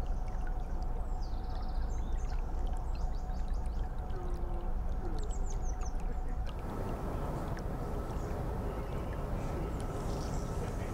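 Steady low rumble of a narrowboat's diesel engine running as the boat cruises slowly, with a few short bird chirps over it. About two-thirds of the way through, the sound changes suddenly to a different steady hum and hiss with a thin high tone.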